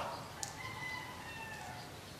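A faint, drawn-out bird call of about a second, with a small click just before it.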